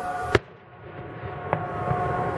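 A sharp firework bang about a third of a second in, with the background dropping away right after it and slowly returning, then a fainter firework pop about a second later.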